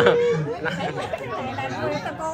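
Several people talking at once at close range: chatter of voices, with one drawn-out syllable trailing off just after the start.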